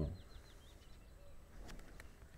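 Quiet room tone with a quick run of faint, high chirps in the first second, and a soft click near the end.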